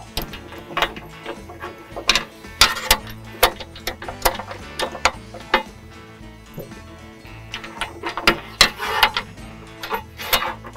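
Irregular metal clicks of carriage bolts and washers being slid into a Toyota truck bed rail channel, over steady background music.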